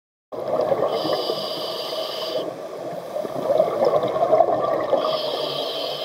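Scuba regulator breathing heard underwater. A hissing inhale through the second stage about a second in, then a long rumble of exhaled bubbles, then another inhale near the end.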